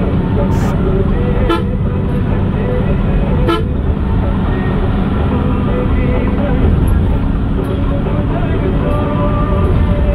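Engine and road noise heard from inside a vehicle driving at speed on a highway, a steady low rumble, with vehicle horn toots in the traffic.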